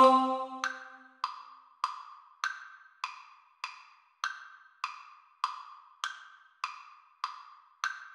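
A practice-track metronome clicks with a wood-block sound at about 100 beats a minute in three-beat bars, the first click of each bar higher-pitched as an accent. During the first second the last sung choral chord fades out.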